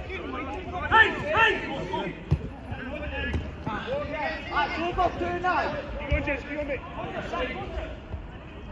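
Men's voices calling and shouting across a five-a-side pitch, with a few dull thuds of the football being kicked.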